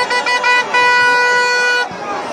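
A horn sounding a few short toots, then one long steady blast of about a second that cuts off abruptly.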